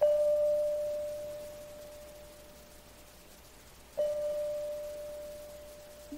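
Music: one bell-like note struck twice, about four seconds apart, each ringing on and fading slowly.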